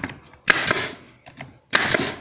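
Pneumatic brad nailer firing twice into a wooden hive frame, about a second apart; each shot is a sharp crack with a short hiss after it.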